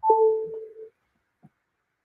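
Two-note electronic beep: a brief high tone dropping to a lower one about an octave down, the whole lasting about half a second.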